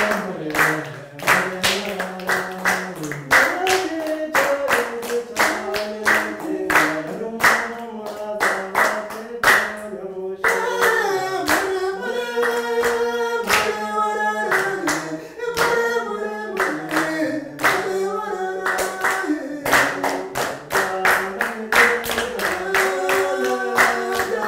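A group of children singing a Rwandan traditional dance song while clapping a steady beat. The clapping drops away for several seconds midway while the singing goes on, then picks up again near the end.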